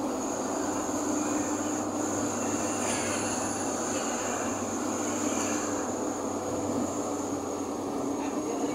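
Steady engine and road noise inside a moving vehicle's cab, with a low engine drone and a thin, high, steady whine running underneath.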